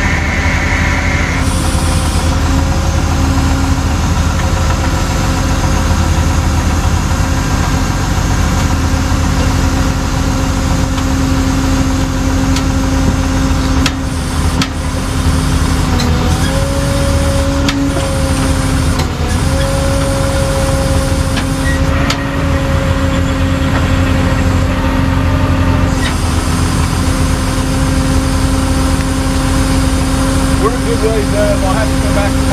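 Tow truck engine running steadily while its winch pulls an overturned pickup back onto its wheels. Around the middle the engine note sags briefly twice under load, with a few faint knocks.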